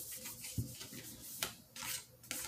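Faint rubbing and handling noise with a few light clicks and a soft low thump about half a second in.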